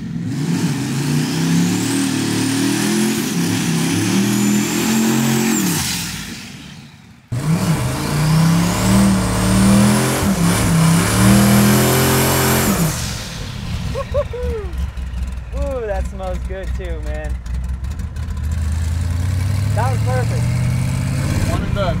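Twin-turbo 408 Windsor small-block Ford V8 in a Factory Five 1933 Ford hot rod accelerating hard through the gears twice, with a high turbo whine rising over the exhaust on each pull. About two thirds of the way through it settles to a lower, steadier note.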